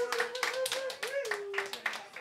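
A few people clapping unevenly, with a single held wavering tone that bends up and then slides down before stopping near the end.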